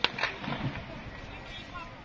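A single gunshot, a sharp crack right at the start, with a weaker crack about a quarter second after it, followed by distant voices.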